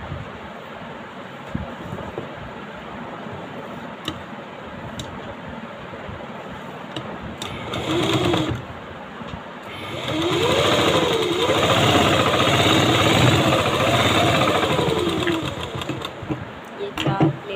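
Sewing machine stitching a dart in satin fabric: a short run about eight seconds in, then a longer run of about five seconds from ten seconds in, its motor speed rising and falling several times.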